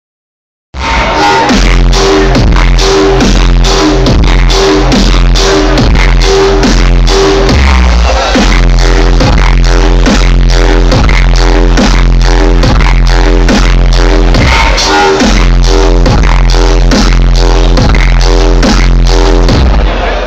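Dubstep DJ set playing very loud over a club sound system, with heavy sub-bass and a steady beat. It starts suddenly under a second in.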